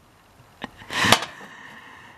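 Glass and plastic-wrapped items being handled in a cabinet: a light click, then a short rustle ending in a sharp knock.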